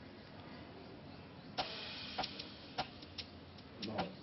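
Faint background film music with a series of sharp, unevenly spaced ticks that start about one and a half seconds in.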